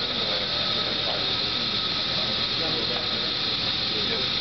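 Steady hiss of laboratory machinery around a materials test frame, with faint voices under it.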